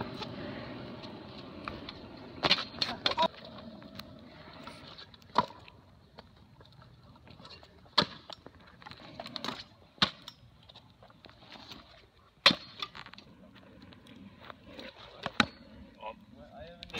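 Stunt scooter wheels rolling on asphalt, the rolling noise fading over the first few seconds. Then come several sharp clacks of the deck and wheels hitting the pavement as flatground tricks land, the loudest about three-quarters of the way through.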